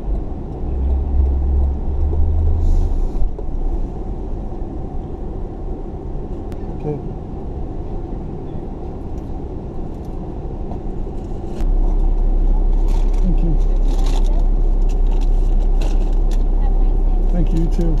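Car engine running, heard from inside the cabin, as the car creeps forward and waits: a low rumble swells briefly near the start, and a louder, deeper steady hum sets in about two-thirds of the way through, with faint talk in the background.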